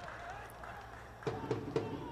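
Faint open-air stadium ambience, with faint voices coming in about a second in.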